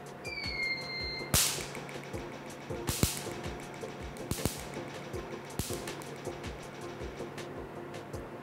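Picosecond laser handpiece firing four single pulses at dark ink dots on tofu, each a sharp snap, roughly a second and a half apart, as the pigment is shattered. Soft background music runs underneath.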